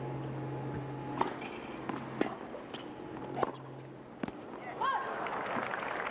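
Tennis rally: five or six sharp racket-on-ball hits about half a second to a second apart, the last one an overhead smash that wins the point. A short shout follows near the end, and the crowd starts cheering and applauding.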